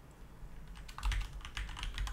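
Typing on a computer keyboard: a quick run of key clicks that starts about half a second in.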